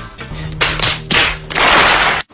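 Comedy reaction sound effect over a low held music note: a few short sharp noisy hits, then about half a second of dense audience applause and cheering.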